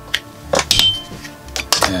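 A few small clicks and knocks as a USB cable and jumper wires are handled and plugged into an Arduino Uno board, with a brief high ting about halfway through.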